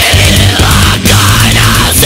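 Loud avant-garde progressive death metal band recording, dense and full throughout, with a brief break about a second in.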